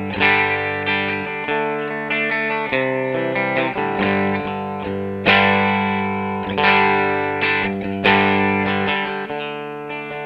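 Electric guitar, a Fender Telecaster, played through a 1961 brownface Fender Deluxe amp: chords strummed and left to ring, with a fresh chord about every second. The heaviest strums come about five and eight seconds in.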